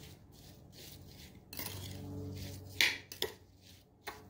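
Metal spoon stirring diced strawberries with sugar in a ceramic bowl, scraping and clinking against the bowl, with a sharper clink about three seconds in.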